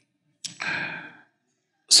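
A man's short breathy exhale close to a headset microphone, starting sharply about half a second in and fading away within a second.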